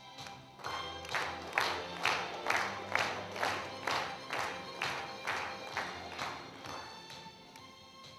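Audience clapping in a steady unison rhythm, about two claps a second, over quiet background music; it swells about a second in and fades toward the end.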